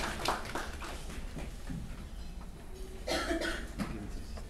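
A single short cough about three seconds in, over a low steady room hum, with light clicks and rustling near the start.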